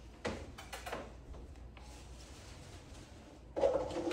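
A few light knocks and clatters of plastic play equipment being handled and set down on a padded floor, in the first second. Near the end a louder, short, low humming voice-like sound begins.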